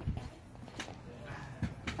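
A few faint, scattered knocks, about three in two seconds, over a low rumble and quiet background.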